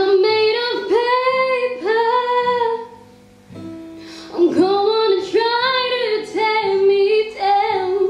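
A woman singing live with her own acoustic guitar accompaniment: two sustained sung phrases with a short pause about three seconds in.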